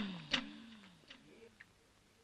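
The tail of the comic background music dies away in a few descending sliding notes. A sharp click comes about a third of a second in, and a couple of faint ticks follow as it fades toward silence.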